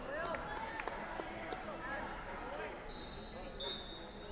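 Busy wrestling-hall din: overlapping shouts from coaches and spectators, with scattered thuds and squeaks of shoes on the mats. A thin, high, steady whistle tone sounds near the end, like a referee's whistle.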